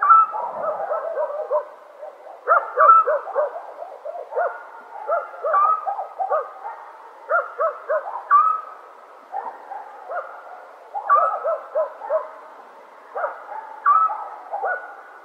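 Animal calls at night: many short, repeated calls, several overlapping, coming in bursts every second or two.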